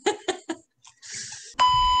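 A censor bleep: a steady, loud, single-pitch beep added in editing to cover a word, cutting in about one and a half seconds in.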